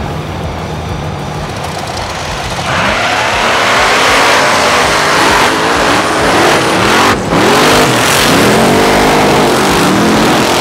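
Rock bouncer race buggy engines revving hard, getting much louder about three seconds in, then climbing and dropping in pitch again and again.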